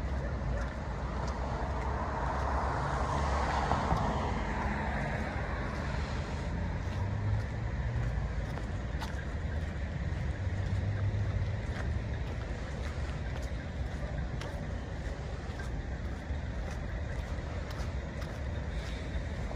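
Steady low rumble of road traffic in the distance, swelling for a couple of seconds a few seconds in.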